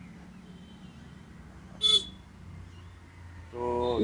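A single short horn toot about two seconds in, over a low steady background hum; a woman's voice starts just before the end.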